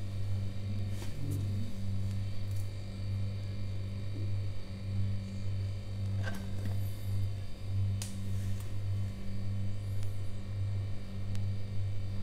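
A steady low electrical hum, with a few brief crackles about a second in and again around six and eight seconds from crispy deep-fried pork knuckle being torn and eaten by hand.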